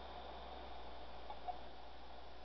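Faint steady hiss and low hum from the Alinco DJ-X10 scanner's speaker in the gap between ham radio transmissions, with two faint short blips about a second and a half in.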